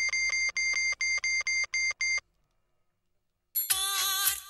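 Mobile phone keypad beeping as a number is dialled: about ten identical short beeps over two seconds. After a pause, a phone ringtone melody starts near the end.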